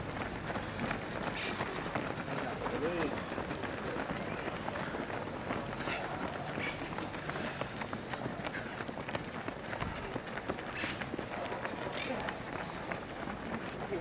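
Many runners' shoes slapping on asphalt as a pack of half-marathon runners streams past, an uneven, continuous patter of footsteps, with scattered voices.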